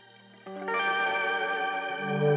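Background music: after a quiet moment, a sustained chord comes in about half a second in and holds steady.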